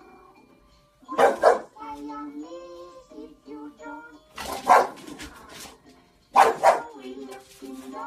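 English Bulldog barking in three short bouts, about a second in, around the middle and again near the end, over cartoon music and singing from a TV.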